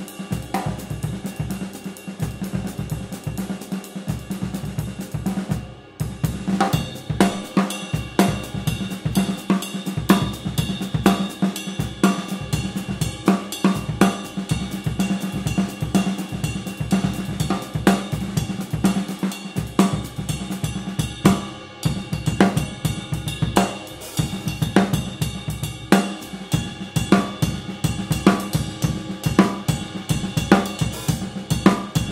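Drum kit groove ridden on a Paiste 22-inch Signature Dark Energy Mark I ride cymbal (3047 g), with snare and bass drum under it, on a Yamaha Recording Custom birch kit with an aluminium snare. The thick, hammered ride has a darker tone but a sharp, biting attack. The playing breaks briefly about six seconds in and again just past twenty-one seconds.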